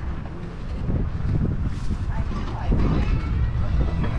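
Wind buffeting the microphone as a steady low rumble, with faint voices of other people talking in the background.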